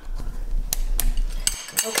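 Rumbling handling noise with two sharp clicks, then a sudden break and a short ringing clink of a metal spoon against dishware.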